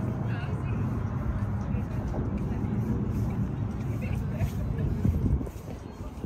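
Steady low rumble of road traffic in the open air, with faint voices.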